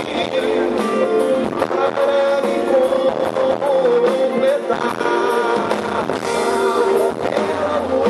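Live pop-rock band playing: a male lead singer over bass guitar and drum kit, holding one long note about three seconds in.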